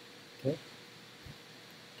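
Faint steady hiss with a thin buzzing hum under it: the background noise of a voice-over recording, broken once by a single short spoken word.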